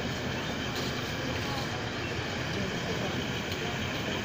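Indistinct voices of people talking over a steady background rumble.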